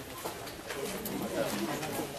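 A bird calling in low, repeated phrases, with quiet voices in the background.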